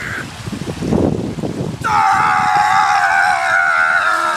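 Water splashing as a man wades through shallow lake water, then, about two seconds in, a man's loud, long scream held on one breath and slowly falling in pitch.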